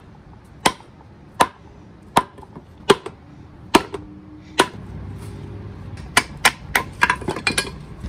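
Rubber mallet striking the metal bracket of an old power steering reservoir to knock it loose. There are six evenly spaced blows about three-quarters of a second apart, then a faster run of knocks near the end.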